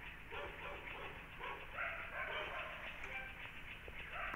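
A dog barking repeatedly, with short barks coming about two a second.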